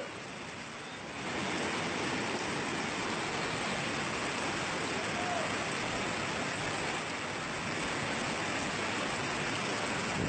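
Floodwater of a street arroyo rushing and surging around a car, with heavy rain: a steady water noise that grows louder about a second in.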